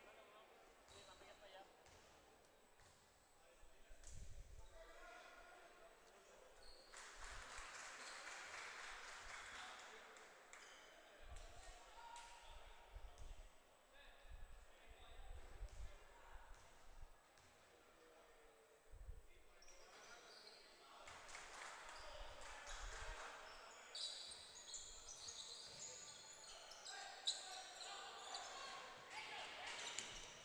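Faint bounces of a basketball on a hardwood gym floor at irregular intervals, as a shooter dribbles before free throws, with faint voices echoing in the large hall.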